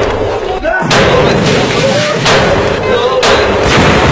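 A series of loud explosive bangs, roughly one every second, each trailing off, with voices shouting between them.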